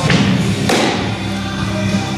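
A pitched baseball popping into a catcher's mitt, a single sharp impact about two-thirds of a second in, over steady background music.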